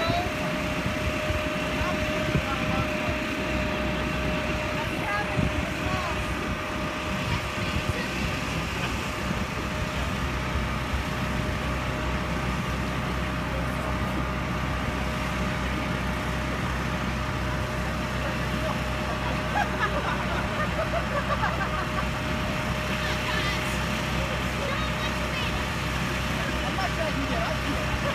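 Steady, even hum of an electric air blower running to keep an inflatable jousting arena inflated.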